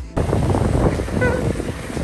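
Wind rushing over the microphone together with skis scraping and sliding on packed snow, starting abruptly just after the start.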